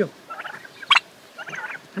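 Young turkeys calling: clusters of short chirping calls, with one sharp, loud call about a second in.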